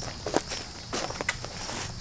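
Footsteps walking on dry leaf litter and wood chips: a few irregular crunching steps.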